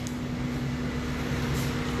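Steady mechanical room hum with a constant low tone, with a faint click near the start and another about a second and a half in.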